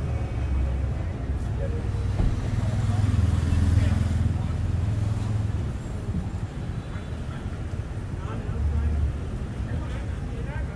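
Street traffic rumbling steadily, swelling as a vehicle passes between about two and five seconds in, with people's voices nearby.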